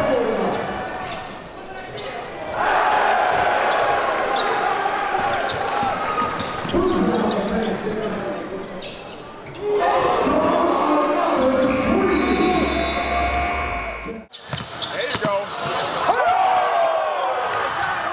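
Basketball game sound in a gym: the ball bouncing on the hardwood, with players' and spectators' voices echoing in the hall. About halfway through a steady tone holds for about two seconds and cuts off suddenly, followed by a brief drop and more knocks.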